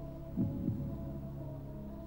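Game-show tension music under a question: a sustained low synthesizer drone with a double, heartbeat-like pulse about half a second in.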